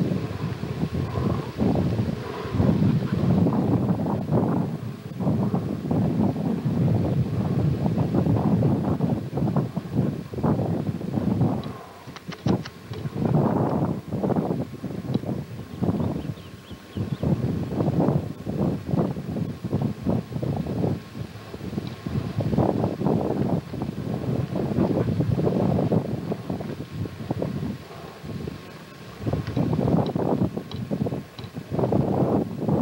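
Wind buffeting a camcorder microphone: a loud, uneven rumble that rises and falls in gusts, with a few sharp clicks about twelve seconds in.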